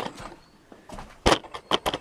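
Handling noise from a hand-held camera being moved about at close quarters: a few sharp knocks and clicks with light rustling, the loudest knock a little past a second in and a quick run of clicks near the end.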